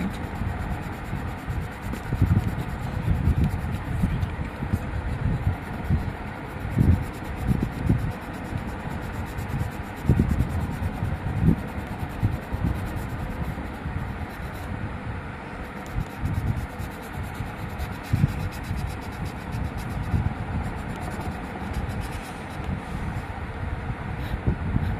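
Broad felt tip of a marker rubbing back and forth on notebook paper while colouring in, over an irregular low rumble.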